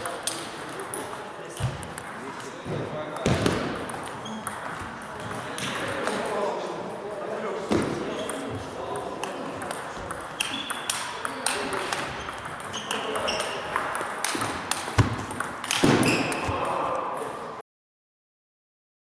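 Table tennis balls clicking sharply off the bats and bouncing on the tables in quick rallies, over a constant murmur of voices in the hall. The sound cuts off abruptly near the end.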